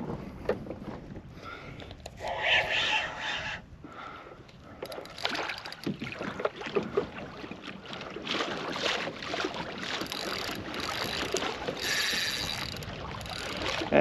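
Water splashing and sloshing against a kayak hull, with irregular bursts through the second half, and wind on the microphone.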